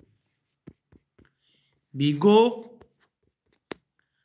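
Stylus tapping and writing on a tablet's glass screen: a few faint taps, then one sharper click near the end.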